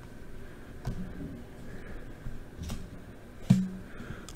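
Quiet handling of glossy trading cards: a few faint clicks as cards are slid past one another in the hands.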